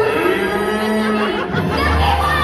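A cow's moo: one drawn-out call of about a second, followed by a lower held note near the end.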